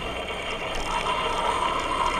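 Bicycle rolling along a paved footpath: steady tyre and drivetrain noise with a constant mid-pitched hum.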